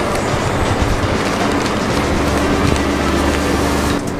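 Intercity coach's diesel engine idling close by: a steady low rumble with a hum, the rumble growing stronger about halfway through.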